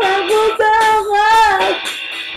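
Karaoke singing: a high voice sings a few long held notes over music.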